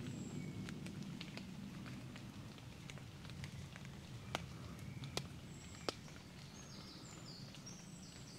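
Quiet woodland ambience: a steady low rumble under a few short, high, thin bird calls, with three sharp ticks close together in the middle.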